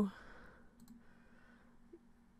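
A computer mouse button clicking once, a quick press-and-release pair about a second in, against faint room tone.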